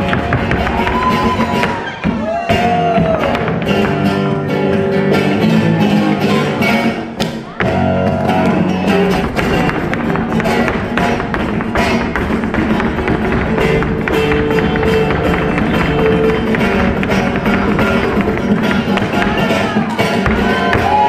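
Live flamenco guitar playing, with many sharp percussive strokes; it dips briefly about two seconds in and again past seven seconds.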